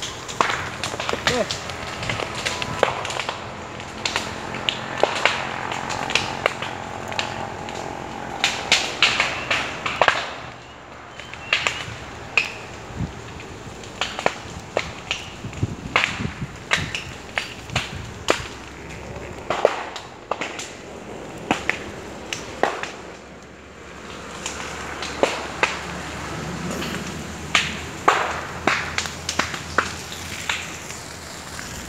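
Dry brush snapping and crackling in irregular sharp cracks, with a steady low hum underneath for about the first ten seconds.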